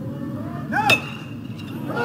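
Aluminum college baseball bat hitting a pitch about a second in: one sharp ping that rings briefly, over steady crowd noise in the ballpark.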